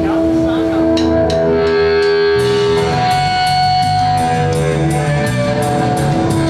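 Live punk rock band playing: electric guitar notes ring out, then drums and bass come in with a steady beat about two seconds in.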